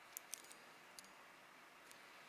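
A few faint, sharp clicks of a machined metal keychain and its split ring knocking together as it is handled, three close together near the start, one about a second in and one near the end, over near silence.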